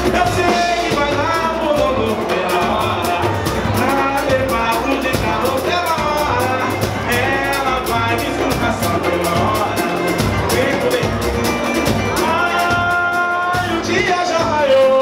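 Pagode band playing live: a male lead vocal sings over cavaquinho, bass and hand percussion with a steady beat.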